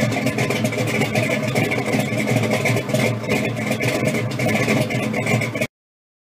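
An engine running steadily, cutting off abruptly near the end.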